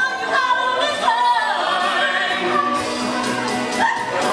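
Musical-theatre duet singing: a held, wavering vocal line over a sustained instrumental accompaniment.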